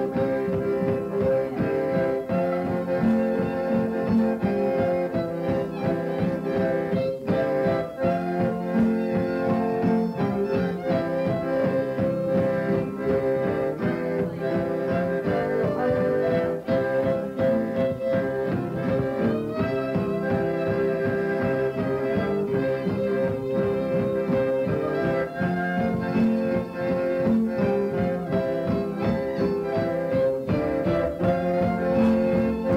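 Fiddle playing a tune with guitar and accordion accompaniment, one unbroken instrumental passage at an even level.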